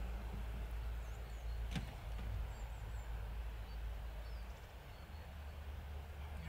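Quiet outdoor background: a steady low rumble, a few faint high bird chirps, and a single sharp click a little under two seconds in.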